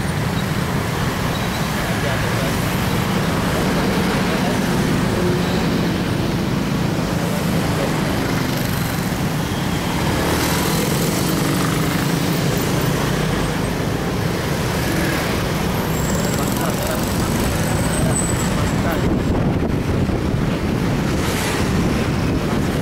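Steady road-traffic noise of cars and motorcycles, heard from a moving vehicle, with a continuous low engine and road rumble.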